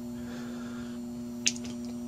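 Steady electrical hum from the running PWM battery-charging circuit. About one and a half seconds in, a single sharp click as an alligator clip is put onto the battery terminal and slips off.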